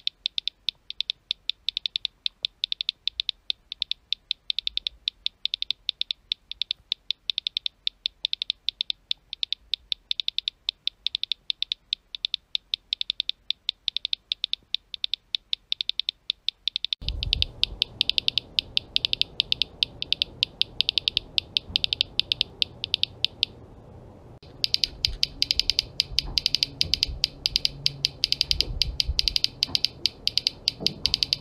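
Rapid, continuous phone keyboard key clicks as text is typed out letter by letter, many clicks a second. About two thirds of the way through, a low steady room hum joins under the clicks. The clicks stop for about a second and then resume.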